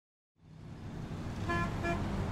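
Low city traffic rumble fading in, with two short car-horn toots in quick succession about a second and a half in.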